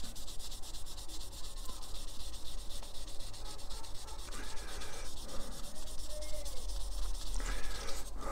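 Fine 4000-grit polishing pad rubbed lightly back and forth over the painted plastic body of a 1/25-scale model car. It makes a faint, steady scratchy rubbing with quick, regular strokes. This is colour sanding to smooth the orange peel out of the lacquer and gloss coat.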